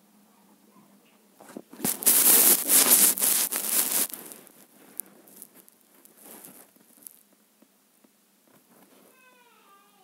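Handling noise of a phone being moved: loud rustling and crackling on the microphone for about two seconds, then softer scattered rustles. Near the end, a brief wavering pitched sound.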